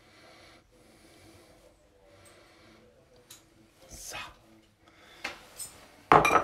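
Faint handling sounds of a metal spoon pushing wet chopped tomato filling into a hollowed mozzarella ball, with two light clicks.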